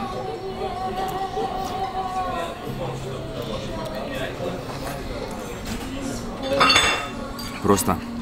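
Background music in a restaurant dining room, with dishes and cutlery clinking. A short loud burst stands out about six and a half seconds in.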